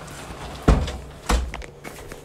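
A door being pushed shut: a loud thud a little under a second in, then a second, lighter knock about half a second later.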